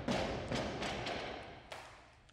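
Barbell loaded with bumper plates, just dropped onto a rubber lifting platform: a few thuds as it bounces and settles, the clatter dying away.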